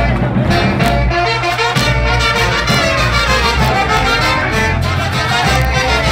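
Live jarana band playing a lively dance tune, with trumpets and trombones leading over a steady beat.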